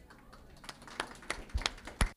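Scattered hand claps from a few audience members, a handful of sharp claps that grow a little louder and closer together toward the end.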